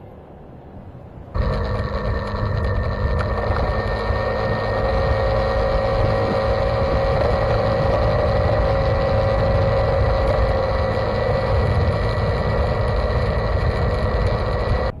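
Motorcycle riding steadily: the engine runs at an even, unchanging tone under a low wind rumble on the microphone. The sound cuts in abruptly about a second and a half in.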